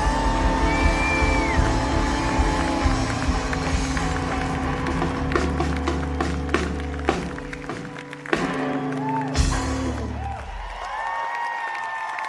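A live rock band on guitars, bass, drums and keyboards holds out the closing chords of a song, with scattered drum hits and a couple of final crashes around eight and nine seconds in. The band then stops and the audience cheers and applauds.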